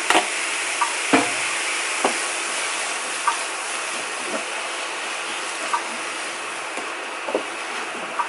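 Shredded cabbage and onion frying in a nonstick pan, a steady sizzle, while a wooden spatula stirs them and taps lightly on the pan every second or so.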